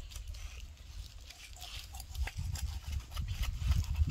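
A knife cutting raw chicken on a wooden chopping block: scattered short clicks and taps of the blade and the gloved hands, over a low rumble that grows louder in the second half.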